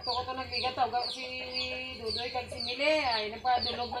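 Chickens clucking, with many quick, high, falling peeps repeating throughout.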